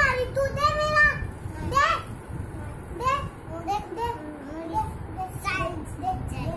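Young girls' high-pitched voices talking back and forth, louder in the first couple of seconds and softer after.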